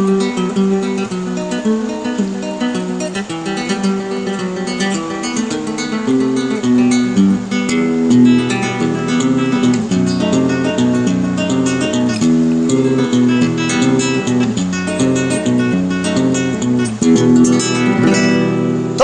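Solo acoustic guitar playing an instrumental passage of a milonga between sung verses: plucked bass notes under a melody, with strummed chords struck here and there.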